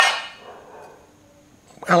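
A chrome-plated cylinder-head cover from a Yamaha XV250 Virago clangs once against a stone sink, the metal ringing for about half a second.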